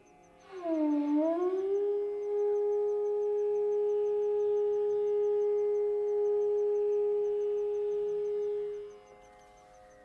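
Carnatic bamboo flute (venu) playing in raga Ranjani: a note that bends down and slides back up in pitch, then one long steady held note lasting about seven seconds, which fades away near the end.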